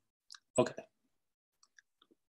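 A man says a short "okay", with a faint click just before it and a few faint ticks near the end, otherwise near silence.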